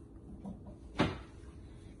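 A single sharp knock about a second in, brief and hard-edged with a short ring after it, over faint kitchen room noise.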